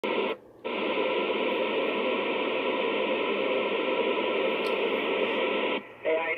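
FM static hiss from a Kenwood TS-2000 transceiver's speaker, tuned to the ISS 2-metre downlink with no voice on the channel. It is steady, with a brief drop-out about half a second in, and it cuts off suddenly near the end.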